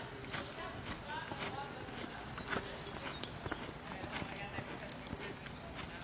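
Hoofbeats of a reining horse, a young stallion, working on an arena surface: a run of irregular knocks throughout, with indistinct voices in the background.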